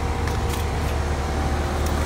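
A steady low mechanical hum with a few faint steady tones above it, and a couple of faint clicks.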